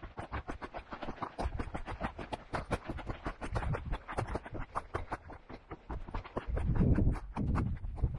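Trail runners' footsteps on a dry, rocky dirt trail: quick, even footfalls, several a second. A low rumble joins them near the end.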